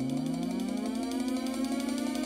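Electronic intro music: a steady low drone with a rising pitch sweep that climbs and levels off about a second in, over a fast, even ratchet-like ticking.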